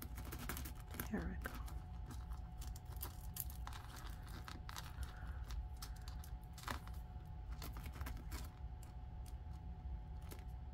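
Light, irregular clicks and tinkles of a fine metal chain necklace being picked at with a pointed wooden stick to work loose a tight knot.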